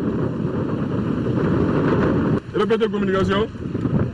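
Steady low rumble of wind buffeting the microphone, broken about two and a half seconds in by a one-second call from a man's voice.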